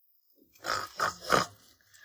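Three short, rough growl-like noises in quick succession, a sound effect standing for a noise heard from upstairs.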